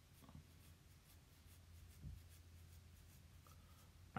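Faint, quick scratching of toothbrush bristles rubbed back and forth over a layer of dried liquid latex on the skin of the nose, lifting the latex into flakes.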